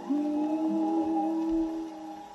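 Orthophonic Victrola acoustically playing a 1927 Victor 78 rpm dance-band record: an instrumental passage of long held notes, which tail off near the end.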